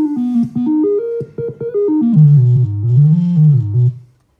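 Handheld glitch synthesizer sounding electronic tones that jump quickly from pitch to pitch for about two seconds, then a lower tone that slides down, up and back down before cutting off at the end.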